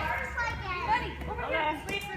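Toddlers and adults talking and calling out at once: background chatter of young children at play.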